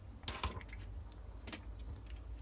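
A screwdriver set down on a wooden workbench with a short, sharp clatter, followed about a second later by a small click as the plastic switch enclosure is handled.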